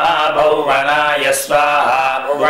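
A man chanting Sanskrit Vedic mantras in a steady sing-song recitation, a litany of offering formulas each ending in 'svaha'. There is a brief break for breath about three-quarters of the way through.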